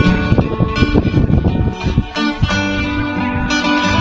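Solo acoustic guitar fingerpicked in a Filipino folk song: a quick run of plucked notes ringing over held bass notes.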